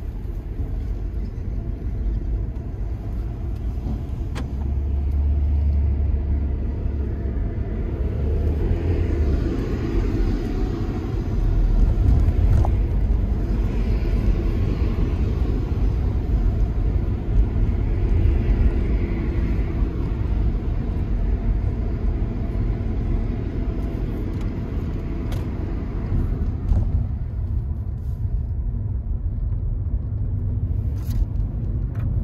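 Car running on the road, heard from inside the cabin: a steady low rumble of engine and tyres that gets a little louder about twelve seconds in as the car picks up speed.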